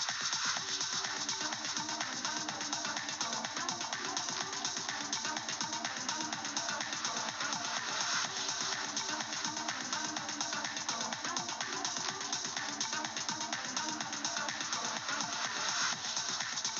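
Electronic future house track at 125 BPM playing back, with a steady driving beat. A delay effect is blended into the whole mix at a high level by a Delay Bank mix-level automation.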